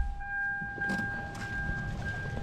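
Toyota 4Runner idling, heard from inside the cabin: a low steady engine sound with a thin, steady high-pitched whine over it, and a couple of faint clicks about a second in.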